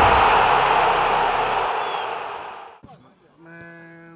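Intro sting of a TV-static noise effect: a loud hiss with a low rumble under it, fading out over nearly three seconds. Near the end a man starts speaking with a drawn-out hesitation sound.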